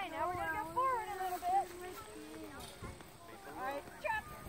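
A high-pitched voice calling out in a long, drawn-out sing-song sound for the first second and a half, followed by a few shorter, fainter vocal sounds.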